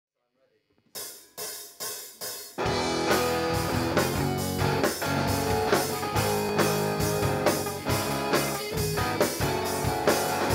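A live band's song intro: four evenly spaced count-in taps about two a second, then the full band comes in with hollow-body guitar and a drum kit playing a steady beat.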